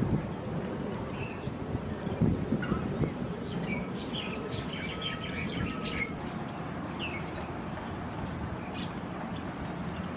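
Small songbirds chirping in short, high notes, busiest a few seconds in and sparser later, over a steady low background rumble.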